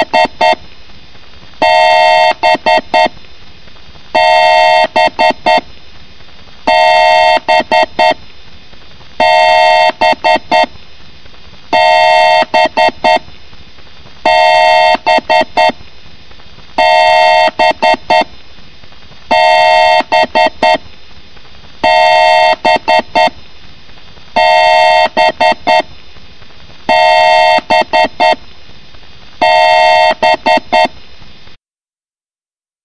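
Electronic computer beeping in a repeating pattern: a two-pitch beep about a second long followed by three or four quick short clicks, repeated about every two and a half seconds, about a dozen times.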